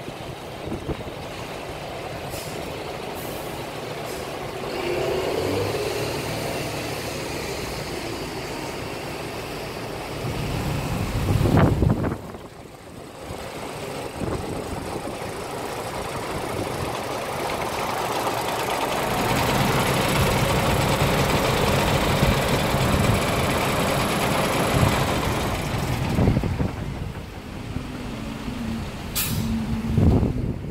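Wind on the microphone over the running noise of heavy vehicles in a truck yard. A loud rush builds about eleven seconds in and cuts off sharply at twelve seconds, and the noise is louder again through the second half.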